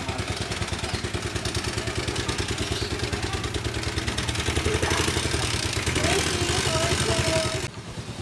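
Small single-cylinder engine of a three-wheeled cargo motorbike idling with a rapid, even pulse; it cuts off abruptly shortly before the end.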